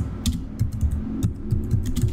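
Typing on a computer keyboard: a run of quick, irregular key clicks over a low steady hum.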